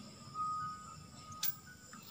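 Faint music from the television's own speaker as the set is switched on, with a short click about one and a half seconds in.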